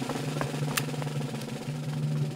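Low drum roll held on one steady pitch, like a timpani roll, with a few faint clicks over it.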